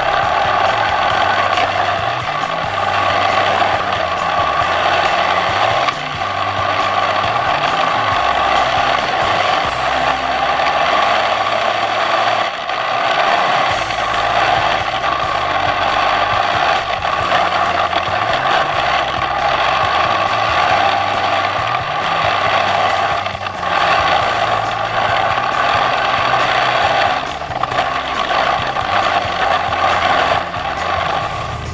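The drivetrain of a brushless RC snowmobile running steadily over snow: a constant motor-and-track whine with mechanical clatter from the track, dipping briefly a few times. Background music with a stepping bass line plays under it.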